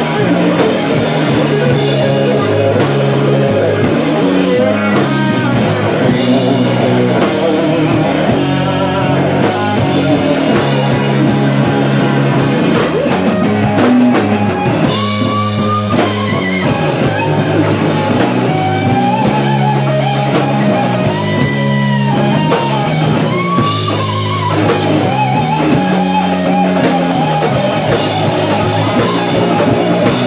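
Live blues-rock band playing an instrumental passage on electric guitar, electric bass and drum kit. From about halfway through, the guitar plays bending lead notes over a steady bass line and drums.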